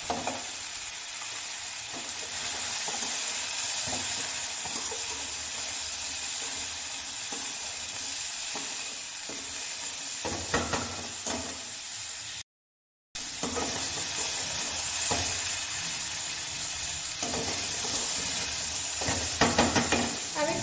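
Diced potatoes and broccoli frying in oil in a metal kadhai, sizzling steadily while a spatula stirs and scrapes against the pan. Bursts of quick scraping strokes come about halfway through and again near the end, and the sound drops out for a moment just past the middle.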